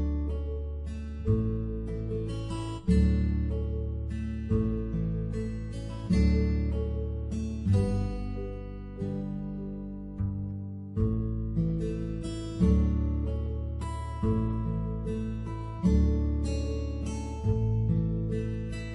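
Background music: acoustic guitar chords strummed about every one and a half seconds, each left to ring and fade before the next.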